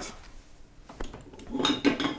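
Hard plastic and metal photo gear being handled on a wooden table: a sharp click about a second in, then a brief clatter near the end as pieces are picked up and moved.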